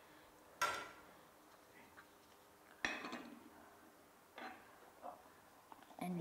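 Small metal tartlet moulds clinking lightly as they are handled and set down: three short knocks, less than a second in, near three seconds, and again a second and a half later.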